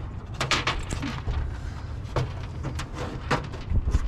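Scattered light metal clicks and scrapes as a hood pin's threaded base is turned by hand in a hole cut through the hood's sheet metal, over a low rumble, with a thump near the end.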